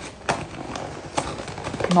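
Paper sandwich wrapping being handled and torn open: soft crinkling with a few sharp clicks and taps.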